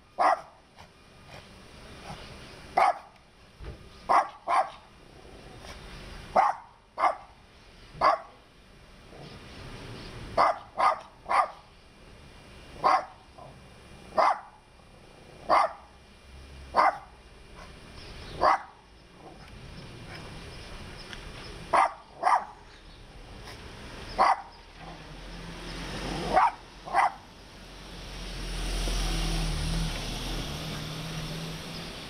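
A dog barking repeatedly: about twenty short barks, single or in quick pairs, a second or two apart. A low rumble builds near the end.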